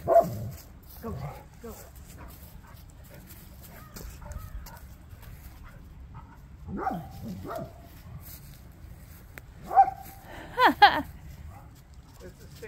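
A dog barking a few times, the loudest barks coming about ten to eleven seconds in.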